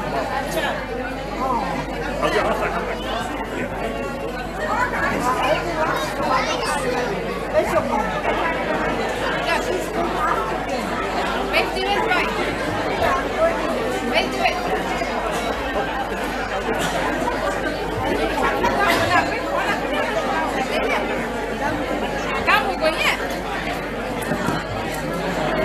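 Crowd chatter: many voices talking over one another at a steady level, with no single speaker standing out.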